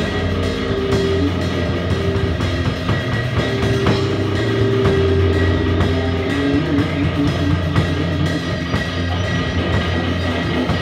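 A live band playing instrumental rock with drums, with long held notes over a steady low bass note.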